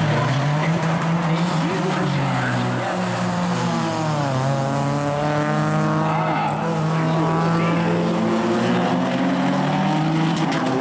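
Two street cars' engines running hard as they race away from the start and around the track, one of them a Nissan Z car. Their engine notes hold steady, then dip and climb again about four seconds in.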